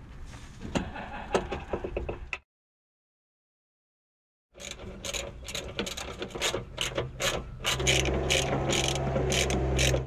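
Hand ratchet wrench clicking in quick repeated strokes, about three to four a second, as the steering damper's mounting nut is screwed tight. The clicking breaks off for about two seconds of silence partway through, and a steady low hum joins in the last two seconds.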